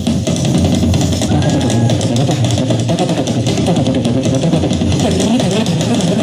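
Live amplified music played on stage, loud and continuous without a break.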